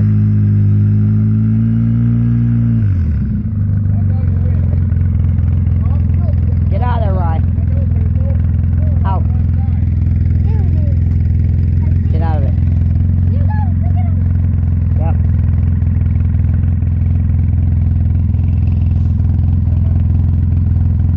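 Engine of a side-by-side off-road UTV running close by: held at slightly raised revs for about three seconds, then dropping to a steady, loud idle for the rest.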